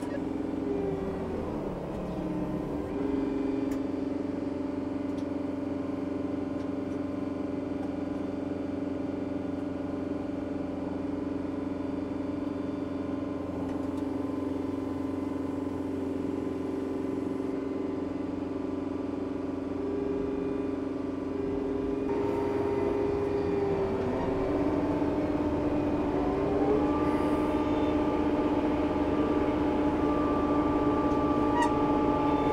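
Kubota M4D-071 tractor's diesel engine running steadily under pulling load. Its pitch shifts about two seconds in and rises again over the last several seconds as it is throttled up.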